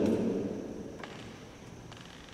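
A pause in speech: the last word fades away in the first half-second, leaving low room tone with two faint clicks, about one and two seconds in.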